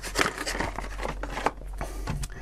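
Clear plastic blister packaging crinkling and clicking in irregular bursts as a ping-pong ball is pried out of it.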